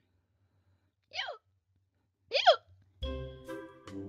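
Two short hiccups made with the voice, about a second apart. Background music begins about three seconds in.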